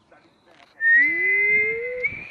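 A person whistling one long steady note that starts just before the middle and lasts about a second and a half, with a fainter rising tone beneath it. It is most likely a whistle to call a dog, which gets up right after.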